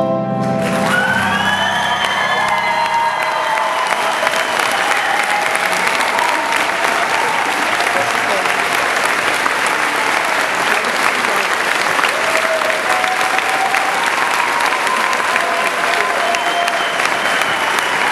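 Large audience giving a standing ovation: sustained loud applause with cheering voices, starting about half a second in as the song's music stops.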